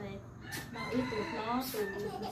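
A rooster crowing in the background: one long call with a held high note.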